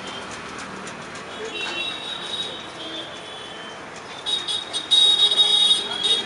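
A spool of manjha (kite string) spinning on its reel as the string is wound, with a high-pitched whine that starts about a second and a half in and grows much louder with rapid clicking near the end, over a steady street-noise background.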